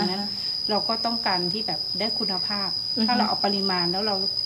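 Steady high-pitched insect drone, one unbroken tone held throughout, with a voice talking over it.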